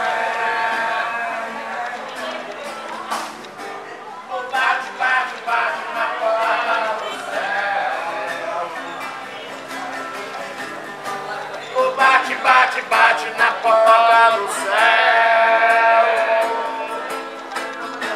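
A man singing, accompanied by a strummed acoustic guitar.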